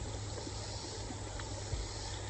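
Steady rush of a creek running over gravel, with a low rumble beneath it. A faint tick and a soft knock near the end, from a wooden stick poking among the stones.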